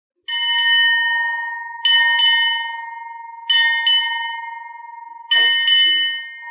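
Ship's bell struck eight times in four evenly spaced pairs, each pair ringing on and fading before the next. These are the arrival honors that announce a senior officer coming aboard.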